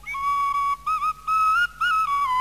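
A small flute playing a slow melody of clear single notes that step gradually upward, with a quick little turn about a second in and a bent note near the end.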